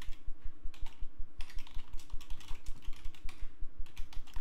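Typing on a computer keyboard: a quick, continuous run of keystroke clicks as a sentence is typed out.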